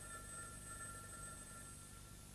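Telephone ringing: one long, steady two-tone electronic ring.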